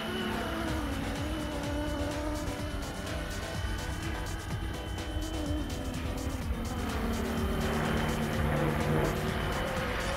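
Electric RC helicopter in flight, its brushless motor and two-bladed rotor giving a steady whine whose pitch wavers slightly as it manoeuvres. Wind rumbles on the microphone underneath.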